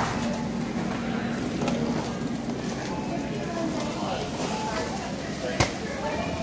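Indistinct voices over steady store background noise, with one sharp click about five and a half seconds in.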